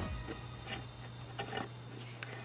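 Faint handling sounds of fingers pulling embroidery-floss strings taut while tying a knot: a few soft ticks over a steady low hum.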